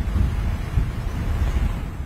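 Wind buffeting a microphone: a loud, uneven low rumble with no other clear sound.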